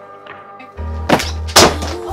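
Soundtrack music: a soft passage, then a deep bass enters under it, followed by two loud thuds about half a second apart, the second the louder.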